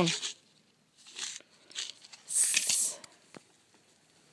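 Packaging rustling and crinkling as it is handled, in three short bursts with the longest a little past two seconds in, and a small click just after three seconds.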